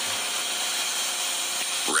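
A steady, even hiss with faint hum lines under it and no speech. It is the background noise of an old videotape soundtrack.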